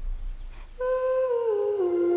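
Soundtrack music thinning to a low rumble, then a single hummed vocal note coming in a little under a second in and stepping down in pitch as it is held.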